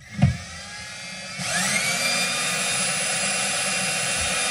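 Power drill's motor whining as it drives a toilet-seat bolt tight into a rubber expansion anchor. A knock comes just after the start, then the whine rises in pitch about a second and a half in and holds steady.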